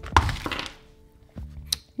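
A screen-protector kit's packaging being popped open and handled: a snap and a brief rustle near the start, then a light click near the end.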